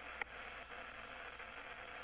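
Steady faint hiss of a narrow-band radio voice link between the shuttle and the ground while the line is open and no one speaks, with one faint click about a quarter second in.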